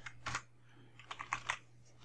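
Computer keyboard keys typed softly: a few keystrokes near the start and another short run about a second in.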